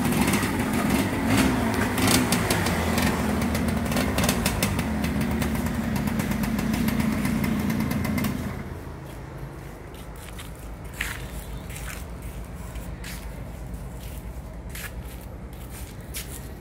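Suzuki Satria 120 two-stroke motorcycle engine running at raised revs, then dropping back about halfway through to a quieter, steady idle.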